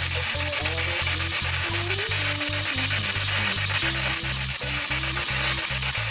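Background music with a deep bass line and a steady beat, over the sizzle of onion, garlic and scallion frying in coconut oil as a wooden spoon stirs them in a steel pan.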